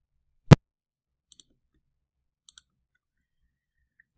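A single sharp click about half a second in, then two faint double ticks about a second apart: computer mouse clicks as the lecture slide is advanced.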